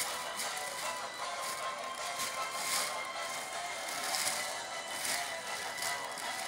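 Thin plastic shopping bag crinkling and rustling in irregular bursts as a hand rummages through it, over music playing in the background.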